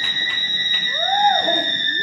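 Theatre audience cheering: one long, steady high whistle held throughout, with a rising-and-falling "woo" hoot about a second in.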